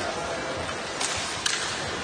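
Ice hockey arena sound: steady crowd and rink noise, with two sharp clacks of the puck in play about a second in and half a second later.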